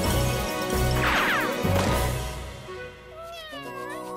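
Cartoon creature's cat-like vocal sound effects over background music with a steady bass beat: one falling call about a second in, and a call that dips and rises again near the end.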